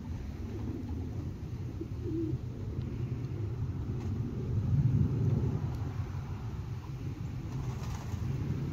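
A steady low outdoor rumble that swells about five seconds in, with one brief, soft low call about two seconds in.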